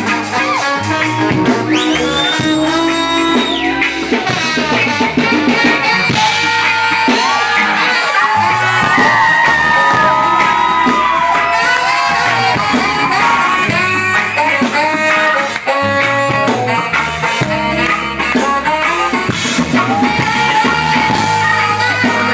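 Live soul band playing: drums, bass and electric guitars, with a lead line of long held notes that bend in pitch.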